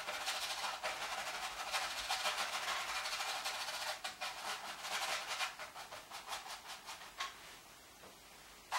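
Paintbrush scrubbing oil paint onto a canvas: a run of quick back-and-forth rasping strokes for the first half, then separate strokes with short gaps, stopping shortly before the end.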